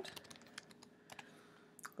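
Faint typing on a computer keyboard: a quick run of key clicks in the first half-second, then a few scattered clicks.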